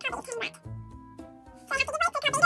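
A young woman's brief muttered vocal sounds at the start and near the end, with faint steady background-music tones in the quieter stretch between them.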